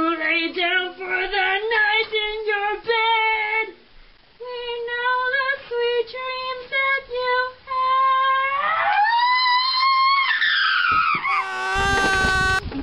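A girl singing a melody unaccompanied, in held notes. About eight seconds in her voice climbs to a high note and slides back down, and instrumental music cuts in just before the end.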